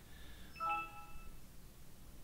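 A short electronic computer notification chime of several tones sounding together, starting about half a second in and lasting about a second.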